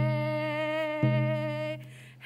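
A woman singing a long held vocable of a Musqueam song over a slow drumbeat, about one beat every second and a quarter. The voice fades toward the end, before the next beat.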